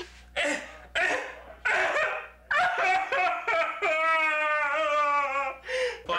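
Three short breathy cries, then one long wavering howl of about three seconds.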